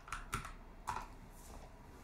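A computer keyboard being typed on: a handful of faint, separate keystrokes as a name is entered.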